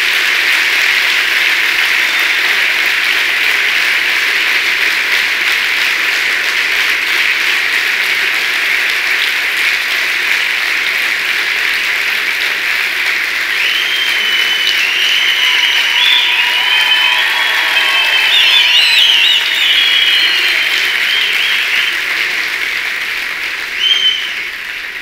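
A large theatre audience applauding steadily for the whole stretch. From about halfway in, shrill wavering high-pitched calls rise over the clapping for several seconds.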